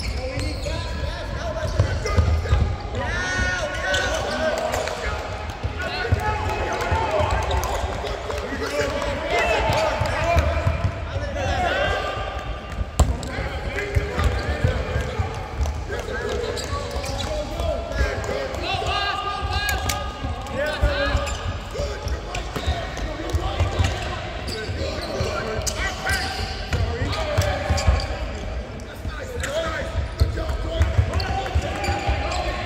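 Basketballs bouncing on a hardwood court during a practice drill, a steady stream of thuds, with voices calling out over them.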